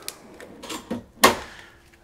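Slide-out barbecue tray pushed back into a caravan's external storage compartment: a short sliding rattle, then one sharp metal clunk about a second and a quarter in as it goes home.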